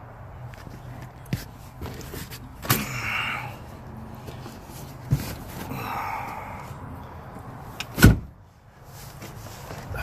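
A few sharp knocks and thumps with rustling between them, the loudest thump coming near the end, over a steady low hum.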